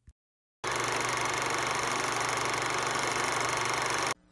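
Old film projector sound effect: a steady mechanical whirring clatter that starts about half a second in and cuts off suddenly at the end.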